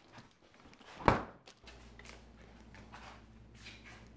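A single sharp knock about a second in, followed by a faint steady low hum.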